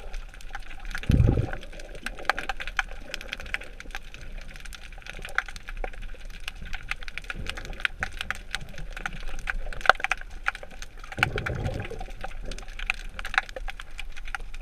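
Underwater ambience picked up through an action camera's waterproof housing: a steady scatter of small clicks and crackles, with two low rumbling swells, about a second in and near the end.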